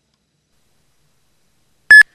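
Near silence, then near the end a single split-second electronic beep, high-pitched and very loud.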